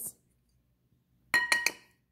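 A measuring cup knocked against the rim of a ceramic bowl to shake out grated Parmesan cheese: four quick ringing clinks about a second and a half in.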